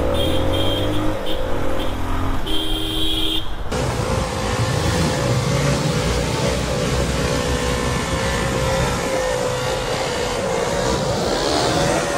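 Motorcycle engine and road noise riding through traffic; after a cut about four seconds in, a motorcycle engine held at steady revs as the bike is ridden in a long wheelie.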